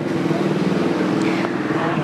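A steady low drone of several held tones, with no speech over it.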